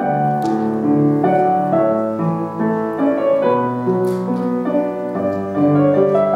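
Heintzman grand piano played solo: sustained chords with a melody on top, the notes changing every half second or so and ringing on.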